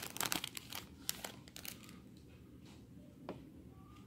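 Foil wrapper of a Topps baseball card pack crinkling and tearing as it is pulled open, with dense crackling over the first two seconds. It then quietens to a few faint clicks and rustles as the cards are handled.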